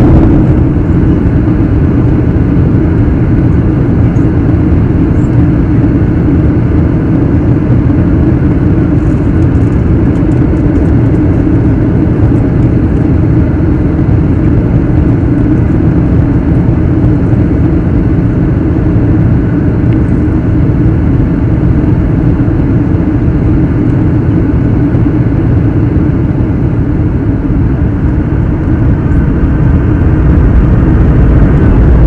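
Steady, loud cabin noise of a Boeing 737-800 descending: a constant rumble of its CFM56 engines and airflow with a steady low hum. It is picked up through a window-mounted camera whose loose suction-cup mount makes the sound poor.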